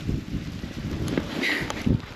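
Wind buffeting the microphone in uneven low gusts, with a few faint knocks and a brief higher sound about one and a half seconds in.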